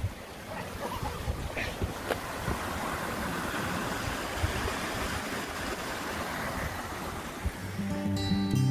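Water rushing over a rocky stream cascade: a steady hiss that swells over the first few seconds and then holds, with a few faint knocks.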